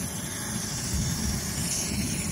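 Coleman 533 Dual Fuel camping stove burning on a pressurised liquid-fuel burner, giving a steady hiss.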